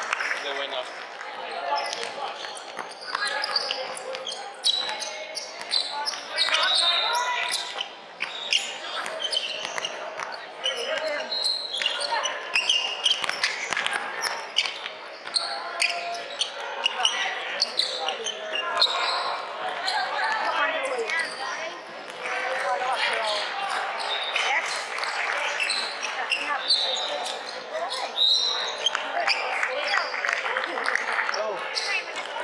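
Basketball game play on a hardwood court: the ball bouncing and other short knocks, mixed with indistinct voices of players and spectators, echoing in a large hall.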